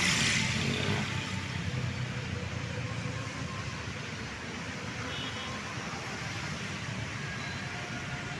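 Steady roadside traffic of cars and motorcycles passing. One vehicle goes by close at the very start, its tyre noise swelling and fading within about a second.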